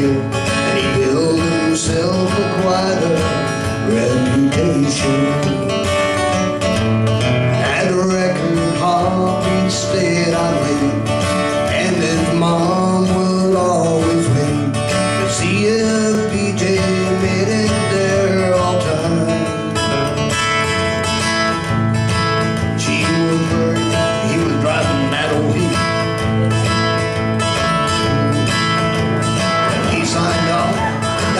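Live acoustic country music: acoustic guitars strumming and picking a steady accompaniment, with a voice singing the melody over them.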